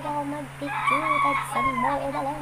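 A rooster crowing once: one drawn-out, high call lasting a little over a second, falling off at the end.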